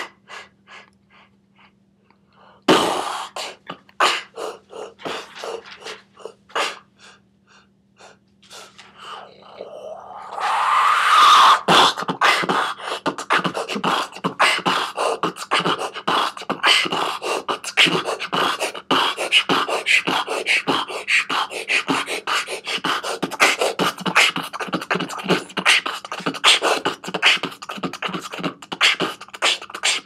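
Beatboxing into cupped hands: sparse clicks and pops for the first ten seconds or so, a rising swell, then a fast, dense beat from about twelve seconds in.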